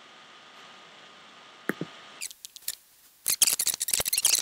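Computer keyboard keys clicking over a faint steady hiss: a few separate taps in the middle, then a fast run of keystrokes near the end.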